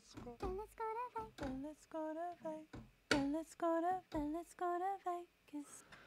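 A sampled vocal phrase played from a MIDI keyboard through Cubase's Sampler Track: about a dozen short sung syllables, each the same clip, stepping up and down in pitch as different keys are pressed, in two runs with a short pause about three seconds in.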